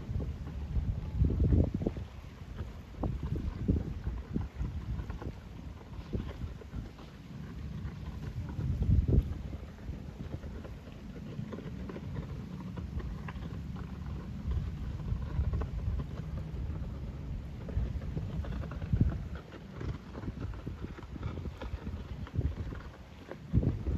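Gusty wind buffeting the microphone: an uneven low rumble that swells and drops every second or two, loudest about nine seconds in.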